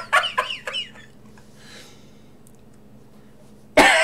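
A man laughing in quick, high-pitched bursts for about a second, then a quiet stretch, then breaking into loud laughter again near the end.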